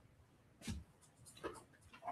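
Near silence of a small room, broken by two faint, brief rustles of paper notes being handled, a little under a second in and again about a second and a half in.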